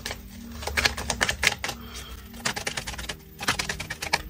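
Tarot cards being handled: quick clusters of small dry clicks and taps, like typing.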